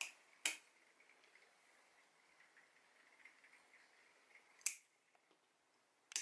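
Pliers cracking pieces off the hard shell of a plum pit, three sharp snaps: one right at the start, one about half a second later, and one a little before the end, with near silence between.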